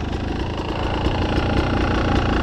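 Beta enduro motorcycle engine idling steadily, a low even rumble.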